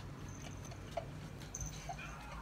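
A cat making two faint, short chirp-like calls, one about a second in and one near the end, over a low steady hum.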